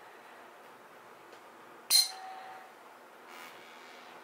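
A gold ear-cleaning tuning fork struck once with a thin metal rod, about two seconds in: a sharp metallic clink with a bright high ring and a lower tone that fades away in under a second.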